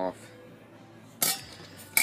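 A single sharp metal clank about a second in as a chrome glass-pack car muffler is handled, with faint scraping around it. The muffler's removable silencer insert sits loose and rattles around inside it.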